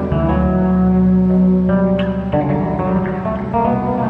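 Instrumental live music from a plucked electric bass guitar, its low notes ringing on and changing pitch a few times.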